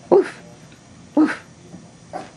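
An 8-week-old toy rat terrier puppy giving two short, high-pitched yaps about a second apart, barking at her own reflection in a mirror.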